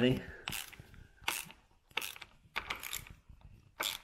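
Ratchet spanner clicking in short bursts, five or six times, as it winds the nut on a wedge-type rivnut setting tool, crimping a rivnut into the body panel.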